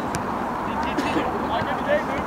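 Short, indistinct calls from players across an outdoor football pitch over a steady background hiss, with a couple of faint sharp clicks.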